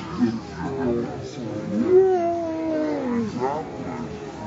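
A person's drawn-out playful call: one long note that rises in pitch, then slowly falls away, over crowd chatter.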